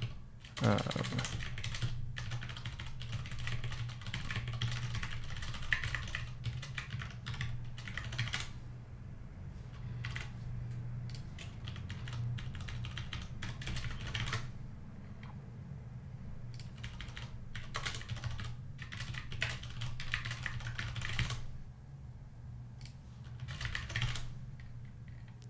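Typing on a computer keyboard: rapid runs of keystrokes in bursts, with brief pauses between them, over a steady low hum.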